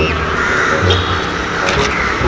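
Background music playing, with no speech.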